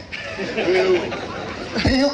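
Speech: a man talking into a microphone, with some background chatter.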